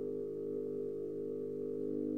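A low wind instrument from a bass trombone, bass clarinet and harp trio holding one long steady note in a contemporary chamber piece.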